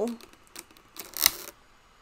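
Handling noise from a child's toy button accordion: a few light clicks and one sharper click about a second in.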